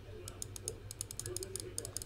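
Computer keyboard being typed on: a quick run of key clicks, about ten a second, over a low steady hum.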